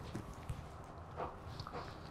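Quiet room with a few faint, soft footsteps and rustles.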